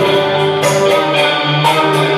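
Live instrumental interlude of Hindi film song from a small ensemble of harmonium, keyboard, electric guitar and tabla. Held chords run over a steady run of short percussion strokes, with no singing.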